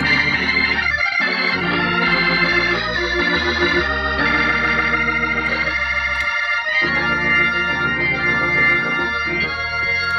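Hammond A-100 tonewheel organ played in a demonstration: held chords over a bass line, with the bass dropping out briefly about a second in and again around six seconds in.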